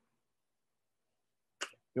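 Near silence, broken about a second and a half in by one short click, just before a man's voice starts again at the very end.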